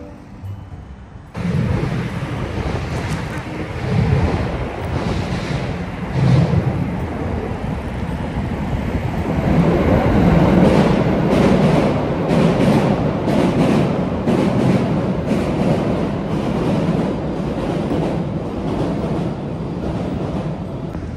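Steady low rumble of riding a bicycle through city traffic, with wind buffeting the microphone. From about halfway through the rumble grows louder and a train runs on the steel railway bridge overhead, its wheels clacking in an even rhythm.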